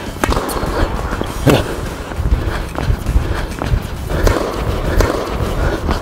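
A tennis rally on an indoor hard court: sharp pops of racket strikes and ball bounces about a second or so apart, over players' shoes scuffing and pounding across the court.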